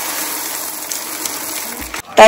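Dried white peas pouring from a plastic container into a plastic colander bowl: a steady rushing rattle of hard peas that slowly thins out, with a soft low bump just before it stops near the end.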